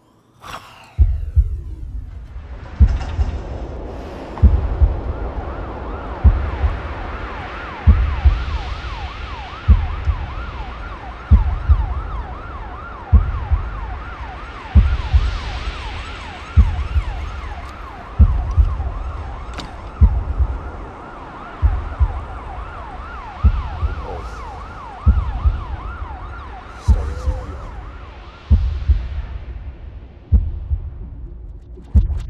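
Emergency vehicle siren wailing in a rapid rise-and-fall yelp, over a deep thump that repeats evenly a little under every two seconds; both start about a second in.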